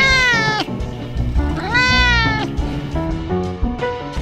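Two cat meows, each rising then falling in pitch, over background jazz music.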